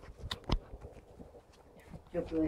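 Handling noise from a spunbond row cover being spread over a greenhouse bed: a few short knocks and rustles, the loudest about half a second in.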